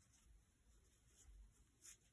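Near silence: faint rubbing of t-shirt yarn against an aluminium crochet hook as the hook goes into a stitch, with one soft click near the end.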